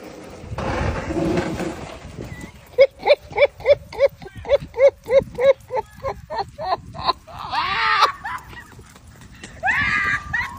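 A person laughing hard in a rapid run of high, whinny-like hoots, about three a second for some four seconds, ending in a louder shriek of laughter. A brief noisy rush comes in the first two seconds.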